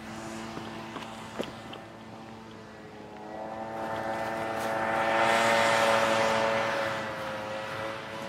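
A passing engine: a drone of several steady pitches with a rushing noise swells over about three seconds, is loudest about halfway through, then fades while its pitch drops slightly as it moves away.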